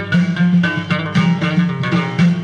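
Live Moroccan Amazigh folk music: a plucked lute playing a melody over hand-struck frame drums keeping a steady rhythm.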